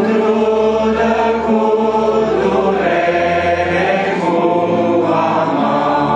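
A congregation of young women singing a Romanian hymn together, with electronic keyboard accompaniment underneath.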